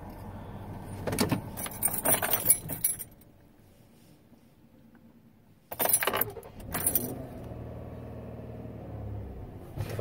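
2016 Ford Police Interceptor engine idling, then switched off with the keys jangling on their ring; after a few seconds of near quiet it is restarted with another jangle of keys and settles to a steady idle. The restart is an attempt to clear a wrench-light powertrain fault that had held the engine to about 1,000 rpm at full throttle.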